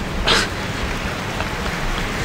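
Crowd applause, an even, steady clapping noise, with a short sharper burst about a quarter second in. It is most likely a recorded applause effect played from the podcast mixer's sound pad.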